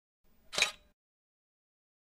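A single short camera-shutter click sound effect about half a second in.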